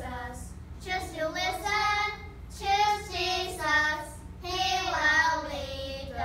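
Children singing a worship song together: several sung phrases with long held notes.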